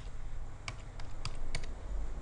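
Computer keyboard keys pressed one at a time: a handful of separate keystrokes typing in a number.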